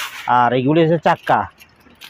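A brief jangling clatter of small metal swivel casters being rummaged in a plastic crate, followed by a voice talking.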